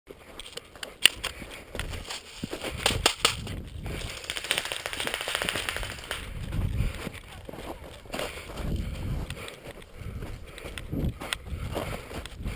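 A player moving through dry brush and snow: rustling of branches and gear, footfalls and sharp clicks, with a denser crackle of brush in the middle and low thumps later on.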